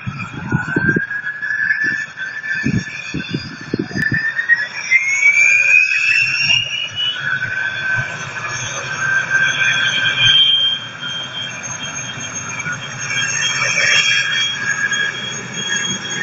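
Airliner jet engines spooling up to takeoff thrust: a whine that rises steadily in pitch over the first several seconds, then holds high over a steady engine rush. Gusts of wind thump on the microphone in the first few seconds.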